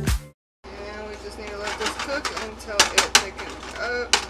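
Background music cuts off just after the start. After a short silence comes stirring in a frying pan of cream sauce with a wooden spatula over a low steady hum, with a few sharp knocks of the spatula on the pan past the middle and near the end.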